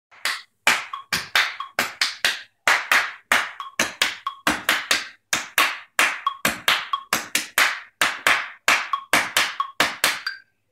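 Hand claps in an uneven rhythm, about three a second, each sharp clap ringing briefly in the room.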